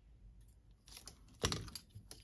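Faint clicks of small hand tools being handled on a workbench, with one short, sharper knock about one and a half seconds in.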